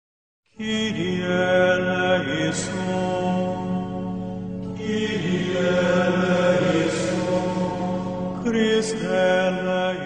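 Opening theme music: a slow sung chant in long held phrases over a steady low drone. It starts about half a second in.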